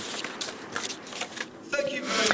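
Paper rustling with irregular light clicks, typical of sheets being handled at a lectern, and a brief voice sound near the end.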